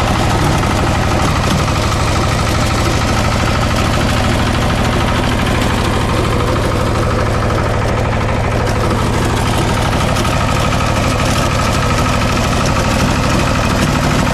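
Walk-behind power tiller's single-cylinder diesel engine running steadily with an even, fast beat while its rotary tines churn the soil.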